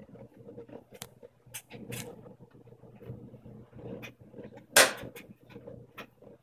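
Brastemp front-loading washing machine tumbling a load of wet bedding. A low steady hum runs under irregular sharp knocks and slaps as the load turns in the drum, the loudest about five seconds in.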